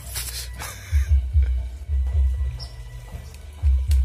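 Background music with a low, pulsing bass beat. A single sharp click sounds near the end.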